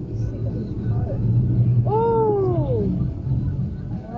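Car driving in slow traffic, heard from inside the cabin: a steady low drone of engine and road noise. A drawn-out voice sound, rising and then falling in pitch, comes about two seconds in.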